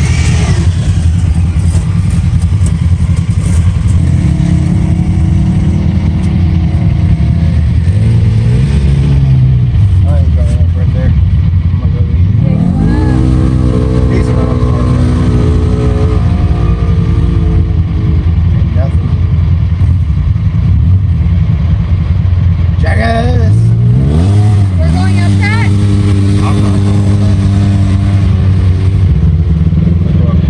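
Side-by-side UTV engine running steadily from inside the cab, revving up and easing back down several times.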